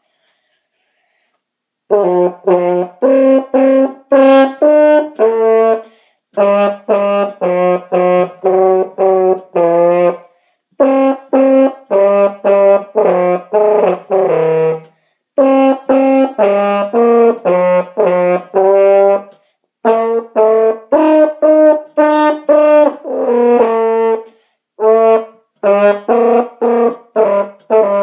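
French horn played solo: loud runs of short, separately tongued notes in the low-middle register, in phrases a few seconds long with short breaks between them. The playing starts about two seconds in.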